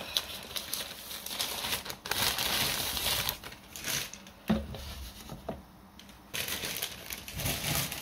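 Thin plastic bag crinkling and rustling in bursts as it is pulled off a clay bowl, with a dull thump about halfway through.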